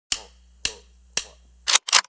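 Three sharp, cracking hits about half a second apart, each dying away quickly, then two short noisy swishes near the end: edited trailer sound effects.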